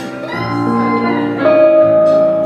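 Live guitar playing an instrumental passage with accompaniment, with a long held note from about one and a half seconds in.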